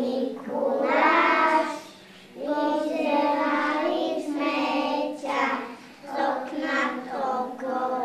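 A group of young kindergarten children singing together, in sung phrases with a breath break about two seconds in and shorter breaks near the end.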